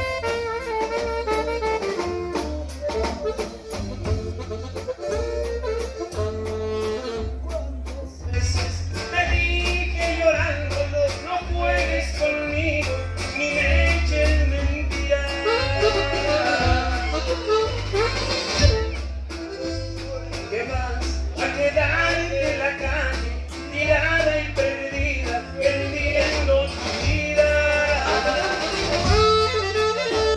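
Live norteño band playing, drums and electric bass keeping a steady pulse under guitar and saxophone, instrumental for the first few seconds. From about eight seconds in, two male voices sing the song together as a duet.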